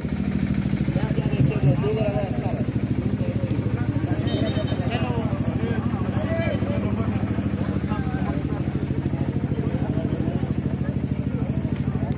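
A small engine idling steadily close by, with a fast, even pulsing, under the chatter of spectators' voices.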